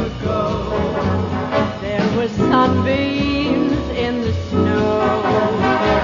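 Close-harmony vocal group singing a lively song with a band playing behind them.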